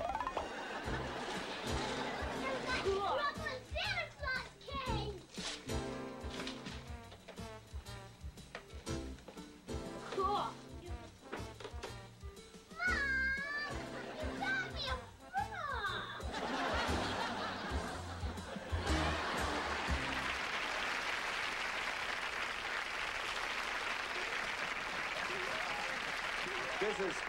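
Background music under children's voices, with high excited squeals about halfway through; then a studio audience applauds steadily for the last third.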